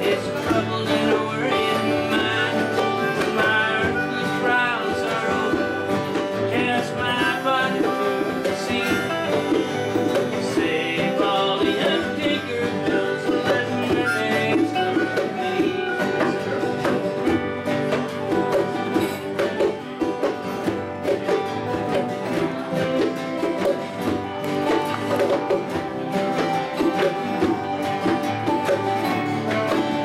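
Acoustic folk jam group playing an instrumental break: several acoustic guitars strumming chords, with harmonica and a whistle carrying the melody.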